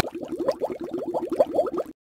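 Electronic transition sound effect: a quick run of short, rising, bubbly blips, about nine a second, ending abruptly near the end. It accompanies the graphic that introduces the next rank.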